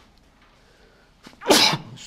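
A man sneezing once, loudly, about one and a half seconds in, after a stretch of quiet room tone.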